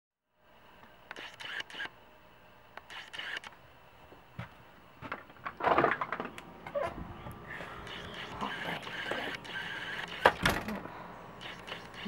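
Handling noise of a hand-held camera being carried about: scattered knocks, clicks and rustles, with louder thumps about six seconds in and again near ten seconds.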